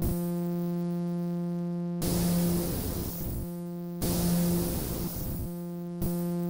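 Yamaha YM3812 (OPL2) FM sound chip voice with operator self-feedback: a steady, buzzy sawtooth-like tone. Twice it breaks abruptly into a burst of noisy hiss that fades back into the tone, the chip turning toward white noise when the feedback is pushed high.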